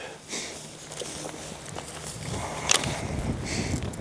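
Footsteps and rustling, with one sharp snap about two-thirds of the way through: long-handled loppers cutting back a branch of a young cherry tree.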